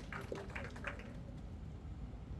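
A few faint, scattered hand claps from the audience in the first second, then the quiet hum of the hall.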